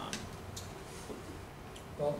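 Quiet meeting-room tone with a low steady hum and a few faint clicks, one just after the start and one near the end.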